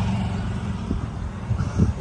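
Ford 289 V8 of a 1965 Mustang idling with a steady low rumble through its Flowmaster dual exhaust, with a couple of soft knocks about a second in and near the end.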